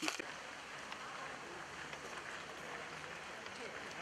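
Outdoor ambience: a steady hiss of background noise with faint, indistinct voices of people in the distance.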